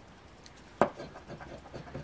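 A coin taps sharply once on a scratch-off lottery ticket about a second in, then faintly scrapes and rubs across the card.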